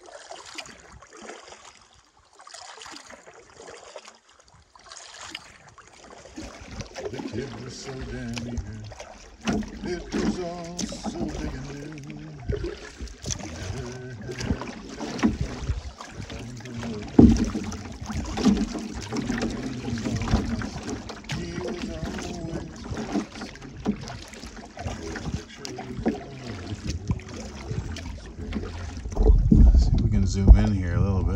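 Canoe paddling, quiet at first with soft strokes and water drips, then from about seven seconds in a man's voice singing wordlessly over the paddling and the water. A single sharp knock stands out past the halfway mark.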